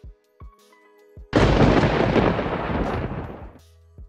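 Logo intro sting: a few faint musical tones and short low thuds, then about a second in a loud explosion-like boom that rumbles and dies away over about two seconds, leaving a low hum.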